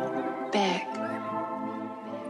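Upbeat instrumental Christmas background music. About half a second in, a brief, loud sound with a falling pitch stands out over the music.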